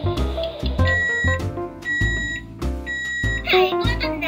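Toy cookie oven beeping three times, evenly spaced, each beep about half a second long, over background music. A high, wavering squeaky sound starts near the end.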